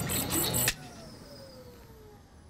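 Cartoon time bomb's rapid mechanical clicking, about five clicks a second, cuts off abruptly as its wire is snipped. A faint whine then falls slowly in pitch as the device powers down, the sign that the bomb is defused.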